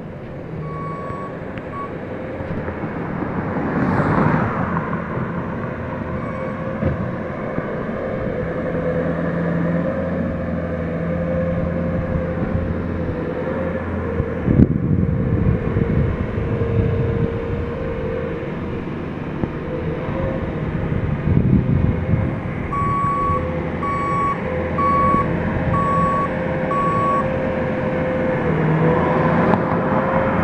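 Construction machinery engines running steadily at a roadside asphalt patch job, with a backup alarm beeping five times at an even pace near the end and once briefly near the start. A few louder knocks and scrapes rise over the engine noise.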